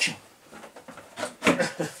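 A man laughing briefly in the second half, with a sharp knock about one and a half seconds in as he handles a plastic RC truck body shell.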